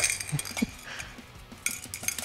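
Light metallic clinks of a handheld coffee roaster knocking against an enamel mug as it is tipped over it: a few single ticks, then a quick cluster near the end.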